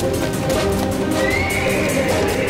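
A horse whinnying, starting a little over a second in with a rising cry, over steady background music.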